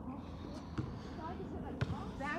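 Faint voices in the background over a steady low rumble of wind on the microphone, with a single click near the end.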